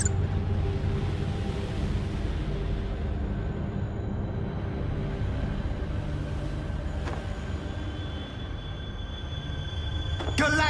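Tense dramatic cartoon score: a low, steady rumble under held tones, with no melody standing out.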